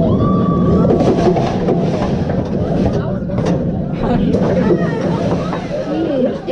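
Alpengeist inverted roller coaster train rolling along the track with a steady low rumble that slowly eases as the ride ends, while riders chatter and call out.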